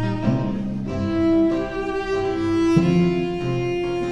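Slow orchestral string music, cellos and violins playing long held notes that change pitch a few times.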